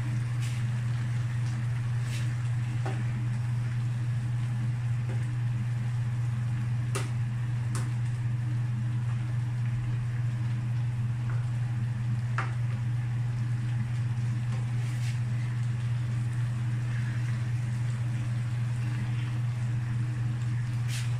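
A steady low hum runs throughout, with a few sparse clicks and scrapes of a plastic spatula against a nonstick wok as bottle gourd and ground pork are stirred.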